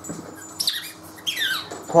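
A small dog whining: two high-pitched squeaks that each fall in pitch, the first about half a second in and a longer one about a second later.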